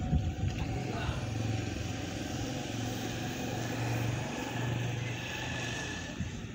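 A motor vehicle's engine running steadily, a low drone that swells slightly about four seconds in.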